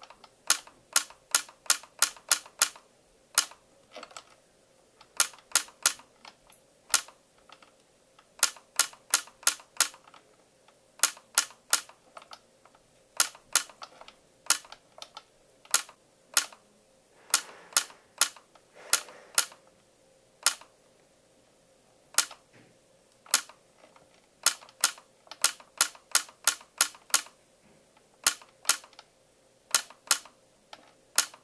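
YAG laser firing shot after shot, each a sharp click, in quick runs of several a second broken by short pauses, dozens of shots in all. Each shot vaporizes part of a vitreous floater, a large Weiss ring.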